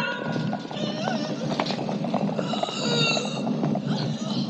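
Horses' hooves clattering on a stone floor in quick, irregular strikes, under an orchestral film score.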